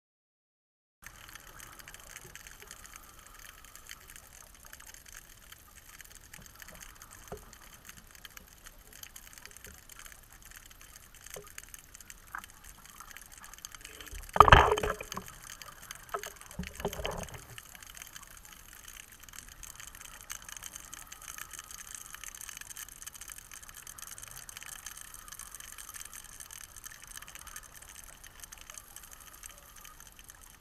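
Steady faint underwater hiss, broken about halfway through by a loud gush of bubbles and a second, weaker gush about two seconds later, typical of a scuba diver exhaling through a regulator.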